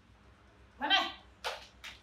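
Baby monkey giving one short pitched call about a second in, followed by two brief breathy sounds.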